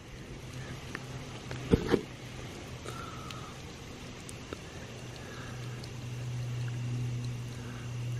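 Cola trickling and pattering onto a concrete slab as it drains out through the hollow stem of an overfilled Pythagorean cup: filled above its inner tube, the cup siphons itself empty. A soft knock about two seconds in, and a low steady hum that grows louder in the second half.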